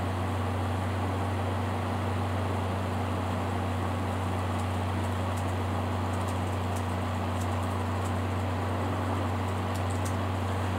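Steady low hum with an even hiss of room noise, such as from an air conditioner or fan. A few faint ticks come through in the second half.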